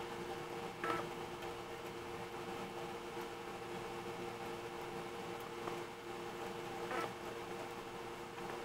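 Steady background hum in two close pitches over a low hiss, with two faint short sounds, one about a second in and one near the end.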